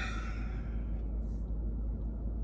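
A man's heavy sigh, a breathy exhale right at the start, then a fainter breath about a second later, over a low steady rumble.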